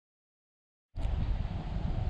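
Silence, then about a second in, wind buffeting the camera's microphone: a dense low rumble that rises and falls.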